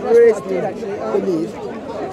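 Indistinct talking and chatter from several people in a crowd, with one louder voice just after the start.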